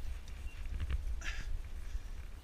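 Low rumble of wind and movement on the microphone of a climber's body-worn camera, with a few small knocks and a short hiss a little over a second in.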